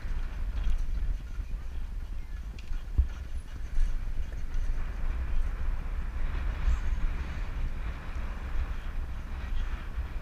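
Wind buffeting a head-mounted action camera's microphone while jogging, a continuous low rumble with the uneven thud of running footfalls.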